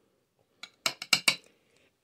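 A metal spoon clinking and tapping against a glass plate while pieces of cured salmon are spooned onto it: a quick run of sharp clicks starting about half a second in and lasting under a second.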